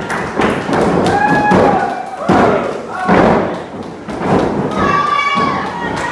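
Several heavy thuds on a wrestling ring's canvas-covered boards as bodies hit the mat, with voices shouting about a second in and near the end.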